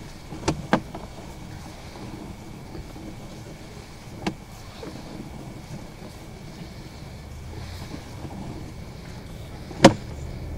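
Sewer inspection camera's push cable being pulled back through plastic drain pipe: a steady low rumble of cable handling, with a faint steady whine and a few sharp knocks, two about half a second in, one around four seconds and a louder one just before the end.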